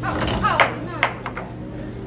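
A voice exclaims "oh, no!", then a few sharp knocks and clicks follow, the loudest two about half a second apart: the game's cookie piece dropping out of play on the wooden pegboard of a tilt-maze game.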